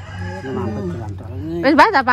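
A rooster crowing, with the loudest crow near the end.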